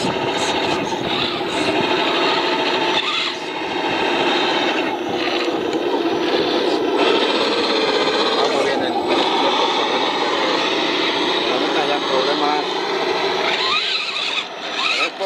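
Overlapping voices of several people talking at once, with the faint whine of the electric motor of an RC rock crawler as it climbs rock.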